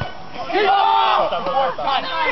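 Several men shouting at once on a football pitch, loud and overlapping for about a second, starting about half a second in. A short dull thud at the very start.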